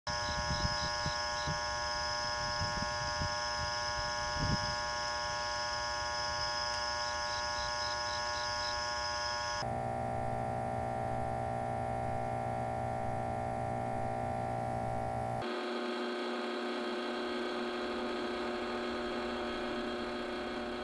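Steady electrical hum and buzz of street lights, made of several held tones at once. The mix of tones changes abruptly about ten seconds in and again about five seconds later. A few faint low thumps come in the first few seconds.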